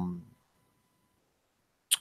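The tail of a man's drawn-out hesitation 'euh', then near silence, then one brief sharp click just before he speaks again.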